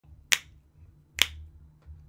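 Two sharp finger snaps, a little under a second apart, over a faint low hum.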